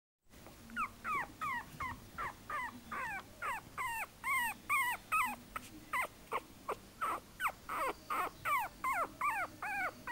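Three-week-old chihuahua puppy crying in a steady series of short, high whimpers, about three a second, each one falling in pitch.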